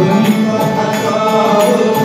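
Live Bengali folk song: male voices singing together over a steady drum beat and plucked strings.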